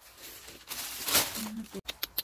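Rustling and crinkling handling noise as fallen apples are picked up among weeds, with a sharper, louder rustle about a second in.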